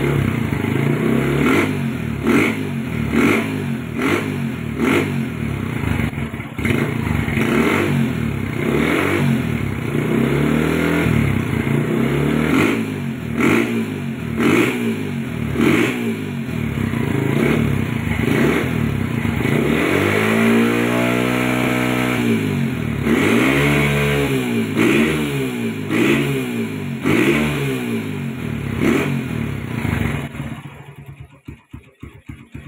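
Honda air-cooled single-cylinder motorcycle engine running on a standard Mega Pro carburettor, stationary on its stand, revved in quick throttle blips about once a second, each rising and falling back toward idle. About two-thirds of the way through comes one longer, higher rev.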